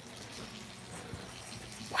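Faint steady background noise of a big-box store aisle with a low hum, with no distinct event.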